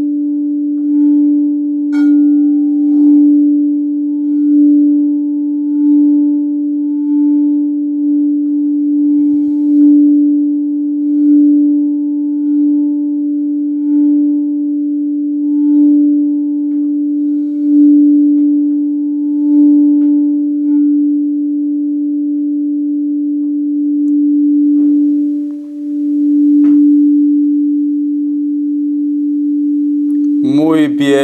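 Quartz crystal singing bowl sounded by rubbing its rim with a wooden wand: one steady pure tone with faint higher overtones, swelling about every second and a half. A light knock of the wand on the bowl comes about two seconds in and another near the end.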